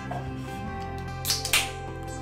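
Aluminium drink can opened by its pull tab: two quick sharp cracks with a short fizz about a second and a half in, over background music.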